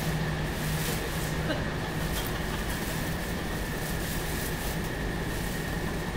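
Steady low hum and rumble with a faint constant high tone, and a few soft crinkles of plastic cling wrap being pulled off a car.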